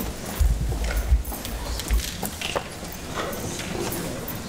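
Microphone handling noise as a wireless mic is passed around: a run of low thumps and bumps in the first two seconds, then scattered light clicks and knocks.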